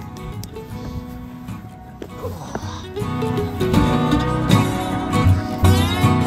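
Background music with held notes, louder in the second half.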